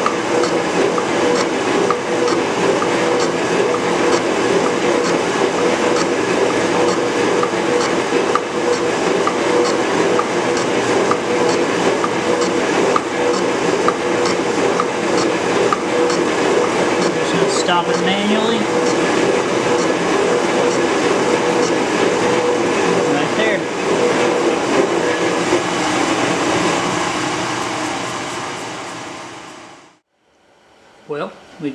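Metal shaper running, its ram stroking back and forth as the tool bit cuts the seat on a cast-iron indexing angle plate: a steady mechanical clatter with a regular beat, fading out near the end.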